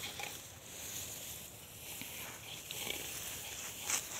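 Dry, ripe wheat stalks rustling faintly as they are cut by hand, with a few soft irregular crunches over a steady high hiss.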